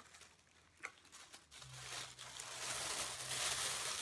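Plastic packaging crinkling as it is handled, starting about one and a half seconds in and growing louder, a rustle of many fine crackles.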